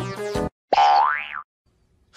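Added background music with plucked notes stops about half a second in, followed by a single comic sound effect, a pitched tone that glides upward for under a second, then silence.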